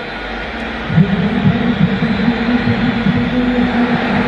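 Stadium crowd noise with vuvuzelas. About a second in, a steady low horn drone comes in and holds, wavering slightly in pitch.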